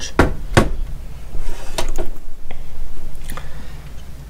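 Two quick knocks, then rumbling handling noise and a few faint taps as the plastic charger and the camera are moved about on a cardboard box.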